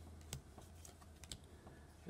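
Faint clicks and slides of thin playing cards as one card is pulled from the front of a hand-held stack and moved to the back.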